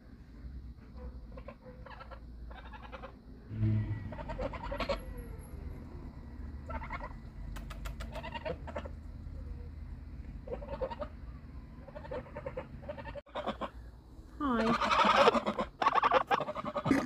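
Two domestic geese giving short honks and chattering calls one after another, with a louder run of honking near the end as one goose comes right up to the microphone. A low thump sounds a few seconds in.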